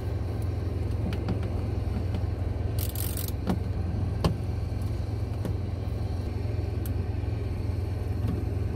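A steady low rumble of an idling engine, with scattered small clicks and a short scrape as T27 Torx screws are turned out of a plastic cab panel with a hand bit driver.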